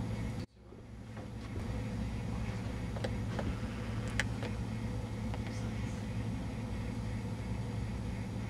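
Steady low background hum with a few faint, short clicks. The sound drops out abruptly about half a second in and then fades back up.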